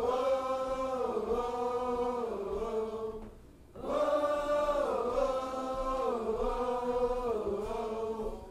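An audience singing together in a choir-like unison. Two long sustained phrases, each stepping down in pitch, with a short breath between them about three and a half seconds in.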